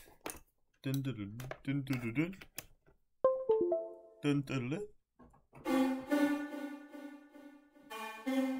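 Vital software synth patch of two saw-wave oscillators, played live from a MIDI keyboard. A few short notes step down in pitch about three seconds in, then a bright, buzzy held chord sounds from about five and a half seconds and changes notes near the end.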